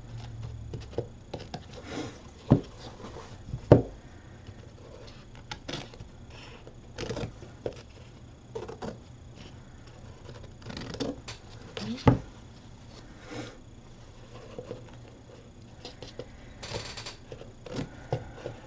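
Scissors snipping irregularly through a paper napkin, with paper rustling and a few sharp clicks, the loudest about two and a half, four and twelve seconds in.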